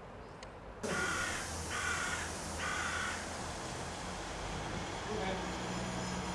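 A crow cawing three times in quick succession, each caw about half a second long. From about five seconds in, the low drone of a diesel multiple unit's engine comes in as it runs into the platform.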